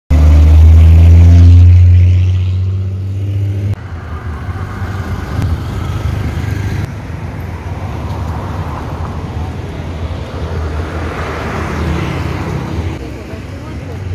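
A city bus's engine running loud and close as it drives past, a deep steady drone that cuts off abruptly a little under four seconds in. After that, general street traffic noise.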